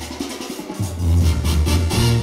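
Live Mexican banda brass band playing, with a sousaphone bass line under brass and drums. The bass drops back briefly and comes in strongly again about a second in.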